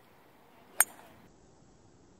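A single sharp, short click about a second in, over faint steady background.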